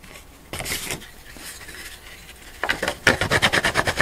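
Hand sanding the edge of a thin plywood cut-out with a small sandpaper-wrapped dowel: soft rubbing at first, then quick back-and-forth scratchy strokes, several a second, starting about two and a half seconds in.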